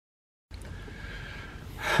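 Half a second of dead silence, then faint background hiss, ending with a man's sharp in-breath just before a tired 'whew'.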